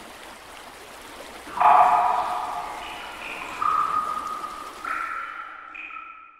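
Intro jingle sound design: a steady rushing hiss, then bright ringing chime tones that enter loudly about a second and a half in, with further chime notes around three and a half and five seconds in, each ringing on as the hiss fades toward the end.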